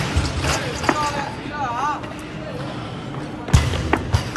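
Weightlifting training-hall sounds: background voices with barbell clanks on the platforms, and one loud thud about three and a half seconds in.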